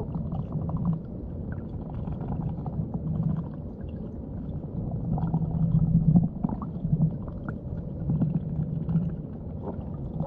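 Muffled underwater sound picked up by a submerged camera in shallow water: a low, uneven rumble of moving water with scattered small clicks and gurgles.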